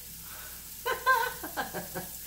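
Diced patty pan squash and carrots frying in butter in a skillet, a steady low sizzle, with a short burst of voice about a second in.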